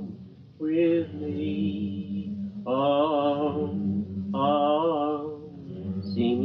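Devotional chant sung in three long held notes with vibrato, over a steady low drone.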